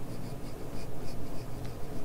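A 2H graphite pencil shading on drawing paper: quick, even back-and-forth scratching strokes, about four or five a second.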